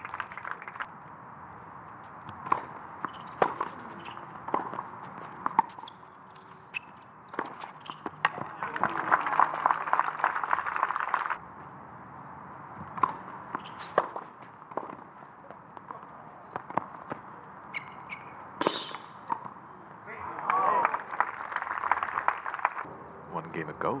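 Tennis ball struck by rackets and bouncing on a hard court, as a run of sharp separate hits. A burst of crowd applause comes about nine seconds in and cuts off abruptly, and applause with voices comes near the end.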